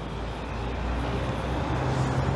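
Street traffic: a vehicle's low rumble approaching and growing steadily louder.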